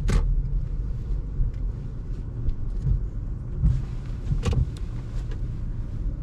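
Subaru car running, heard from inside its cabin as a steady low rumble, with a sharp click just after the start and another about four and a half seconds in.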